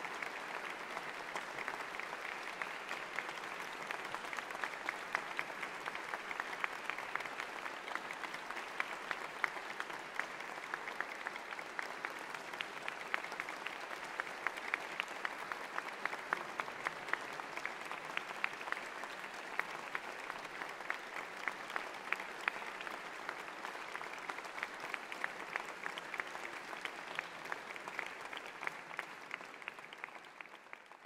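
Audience applauding steadily: a dense, unbroken patter of hand clapping.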